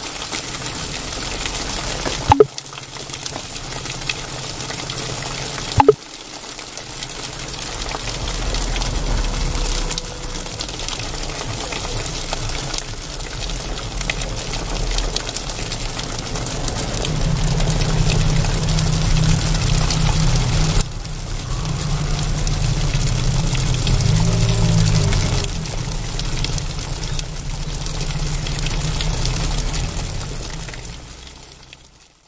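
Liquid sloshing inside a capped glass jar as it is tipped and turned, with two sharp clicks in the first six seconds.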